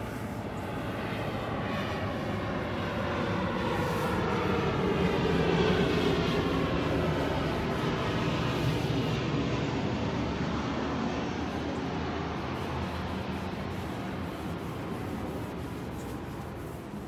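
An airplane flying low overhead, its engine noise swelling to a peak about five or six seconds in and then slowly fading away.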